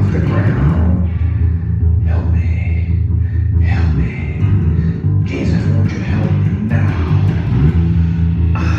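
Live band playing a rock number: electric guitar and bass keep a steady groove while a harmonica, cupped to the vocal microphone, plays short phrases over them between sung lines.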